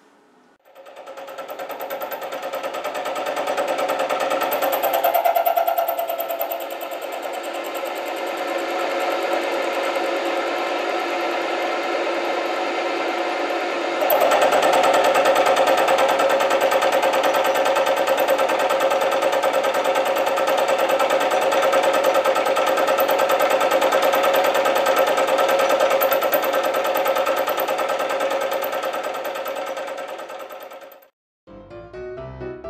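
Bench milling machine running, its face mill cutting across the top of a metal tool-holder block: a steady, buzzing machining sound. It starts just under a second in and gets louder about 14 seconds in.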